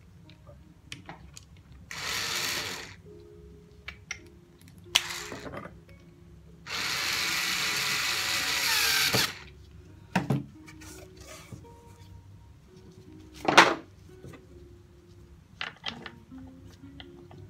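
An electric drill/driver runs in three bursts, about one second, half a second and two and a half seconds long, as the coffee grinder is put back together. A couple of sharp knocks follow.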